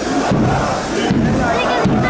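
Large crowd of football fans shouting and chanting loudly together in repeated surges.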